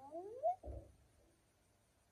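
A short vocal sound rising in pitch, under a second long, followed by a soft low thump.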